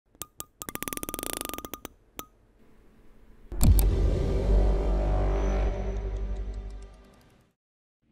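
Logo intro sting: a few sharp clicks and a quick run of ticks in the first two seconds, then a loud deep hit about three and a half seconds in whose low sustained sound fades away over the next few seconds.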